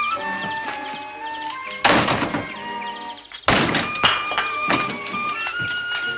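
Background music score with two loud crashes, one about two seconds in and one about three and a half seconds in, and lighter knocks after them: bricks being heaved out of a car and landing.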